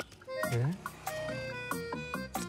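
Comic film background music: a melody of short, stepping notes over a low note that swoops upward about half a second in.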